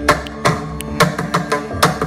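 Mridangam, the two-headed barrel drum of Carnatic music, played solo in a quick, intricate pattern of sharp ringing strokes: the loudest fall about three or four a second, with lighter strokes in between.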